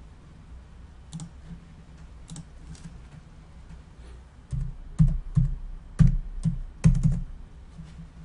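Computer keyboard and mouse clicks at a desk: a few scattered clicks, then about four and a half seconds in a quick run of louder clacks with dull thuds, ending shortly before the close.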